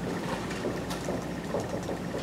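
Marker writing on a whiteboard, faint short strokes over the steady hum of a lecture hall.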